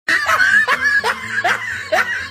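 Laughter: a rapid run of short snickers, each rising in pitch, a little over two a second, over a faint steady low tone.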